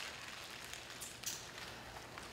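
Quiet room tone with a few faint clicks and rustles.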